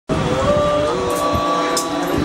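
Male voices chanting Sanskrit mantras for the abhishek in long, held tones that bend slightly in pitch.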